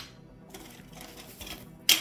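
Hands handling fibreglass PCB panels on a desk: faint rustling, then a single sharp clack near the end.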